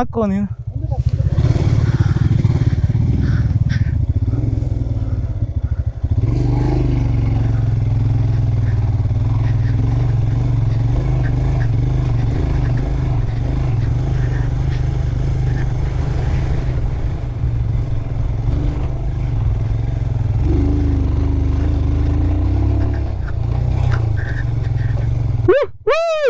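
Royal Enfield Himalayan's single-cylinder engine running steadily as the motorcycle rides slowly up a dirt track, its note shifting slightly now and then. A brief drop about six seconds in.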